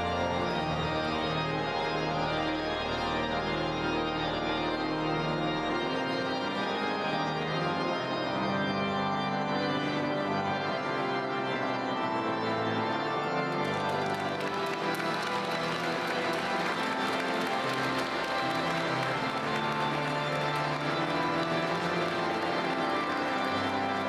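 Pipe organ playing sustained chords in a large reverberant church. A little past halfway, clapping from the congregation joins in under the organ.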